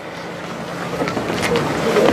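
Steady outdoor background noise with faint crowd voices, growing louder toward the end.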